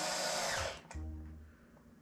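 Cordless drill/driver whirring as it drives small screws for a cigar box guitar's tailpiece into the wooden box, stopping just under a second in, followed by a short, lower whir.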